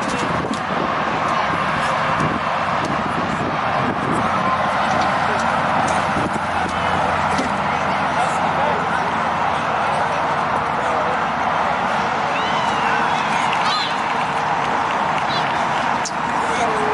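Outdoor junior football match ambience: indistinct, distant voices of children and adults calling across the field, over a steady outdoor hiss.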